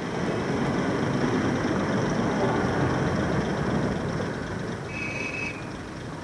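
Street tram running past, a steady rumble loudest for the first four seconds or so and then easing off. A brief high ring about five seconds in.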